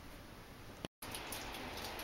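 Faint room tone with light handling noise and scattered small clicks, broken by a brief total dropout at an edit about a second in.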